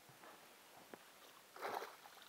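A small pike splashing briefly at the water's surface as it is landed by hand, about one and a half seconds in; otherwise faint.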